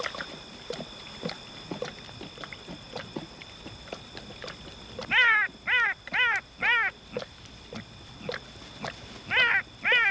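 An animal gives four short whining calls in quick succession about five seconds in, each rising and falling in pitch, and two more near the end. Under them, night insects trill steadily.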